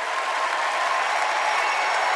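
Crowd applauding steadily.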